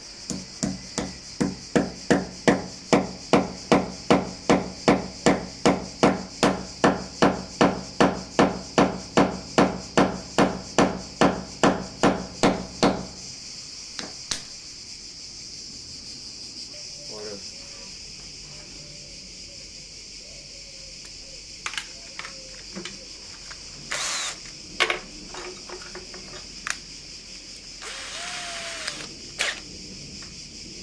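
Small hammer tapping a nail through a plastic pipe-support clip into hard wall plaster, in a fast, even run of about three blows a second that stops about thirteen seconds in. Scattered small clicks and knocks follow as the next clip is handled.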